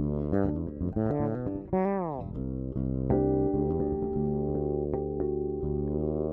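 Fretless electric bass with an ebony fingerboard and EMG active pickups, played through an amp. A run of quick notes ends in a slide down in pitch about two seconds in, followed by longer sustained notes.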